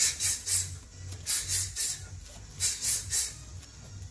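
Sharp hissing exhales through the teeth, one with each punch of a jab high, jab low, cross combination: three quick hisses per set, three sets.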